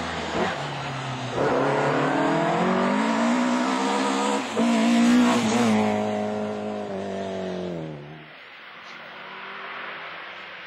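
Rally car engine revving hard as the car accelerates past, its note climbing in pitch with a brief break about four and a half seconds in, then dropping and fading as it pulls away, about eight seconds in.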